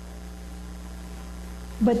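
Steady low electrical hum, like mains hum through a sound system, in a pause in speech. A woman starts speaking again near the end.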